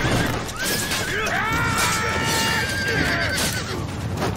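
A horse whinnying: one long, high neigh from about a second in, held for a couple of seconds and dropping away at the end.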